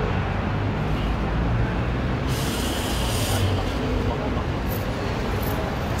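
City bus running in street traffic, with a hiss of compressed air about two seconds in that lasts about a second, from the bus's air brakes or doors.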